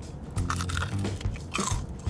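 Biting and chewing into a Korean corn dog coated in deep-fried potato cubes: a few crisp crunches, about half a second apart.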